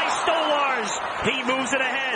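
A hockey play-by-play commentator's voice over steady arena crowd noise.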